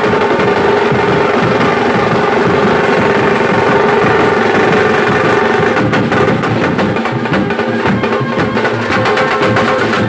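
Live Indian brass band playing: trumpets and saxophone holding a melody over loud, dense drumming on large slung bass drums. The drum strokes come through more sharply in the second half.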